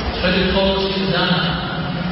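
Men's voices chanting in long held notes, an Orthodox prayer-service chant.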